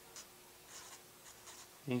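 A pen writing on paper: a few short, faint scratching strokes as numerals are written out.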